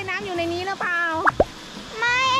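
A child's high-pitched voice vocalising without clear words, then a short pop about one and a half seconds in.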